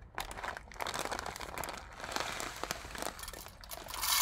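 Plastic bag of bird seed crinkling and rustling as it is handled, a continuous run of small crackles.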